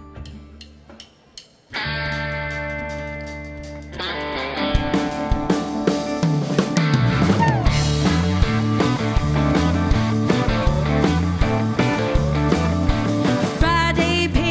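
A live country band begins a song. After a quiet moment a held chord starts, and the full band with drums, bass and guitars comes in about four seconds in, keeping a steady beat. A female singer's voice enters near the end.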